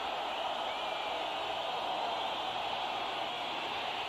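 Steady stadium crowd noise, an even wash of many voices, heard through old television broadcast audio while a football play runs.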